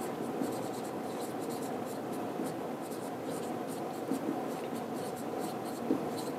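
A writing implement scratching steadily across a surface, continuous and fairly quiet.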